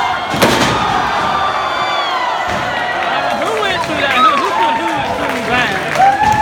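A wrestler slammed down onto the ring: a single crash about half a second in, followed by a crowd of fans shouting and cheering.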